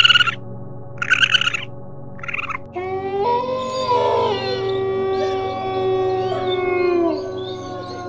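Three short, high, raspy calls from raccoon dogs in the first two and a half seconds. Then several gray wolves howl together, their long overlapping notes held and sliding down in pitch, with a new howl starting near the end.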